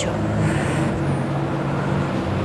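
Steady low rumbling hum of background noise, with no distinct knocks or footfalls.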